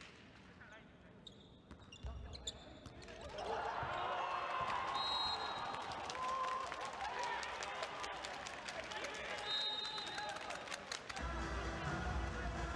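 A volleyball bounced on a wooden gym floor before a serve, then a rally in a sports hall: sharp ball hits, high shoe squeaks and players' shouts over crowd clapping.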